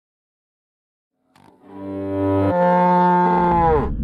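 Cello bowed: a low note, then a higher held note, then the pitch slides sharply down in a falling glissando near the end.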